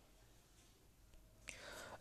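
Near silence: room tone, with a faint mouth click and a soft intake of breath near the end.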